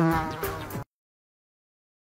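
Cartoon bee buzzing sound effect, a wavering buzz that cuts off suddenly just under a second in.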